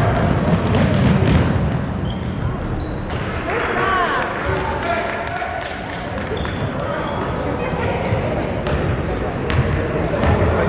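A basketball being dribbled on a hardwood gym floor and sneakers squeaking as players run, over indistinct voices and shouts in the gym.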